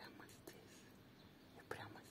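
Near silence, broken by a few faint, short whispered sounds from a person: one at the start and a louder one near the end.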